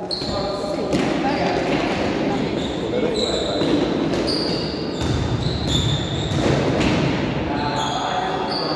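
A basketball bouncing on a gym floor and sneakers squeaking in short chirps as players move, over indistinct shouting and chatter echoing in a large hall.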